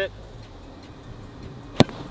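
A golf club striking an American football off the tee in a full swing: one sharp crack near the end.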